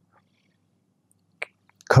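A pause in a man's talk: near silence, then one short, sharp mouth noise about one and a half seconds in, and a few faint clicks just before his voice comes back at the very end.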